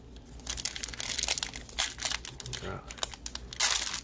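Crinkling foil wrapper of a 2020 Score football trading-card pack as it is picked up and handled, a run of sharp crackles that grows to its loudest burst near the end.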